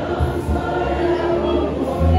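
A church congregation singing together, many voices at once, over a steady low bass.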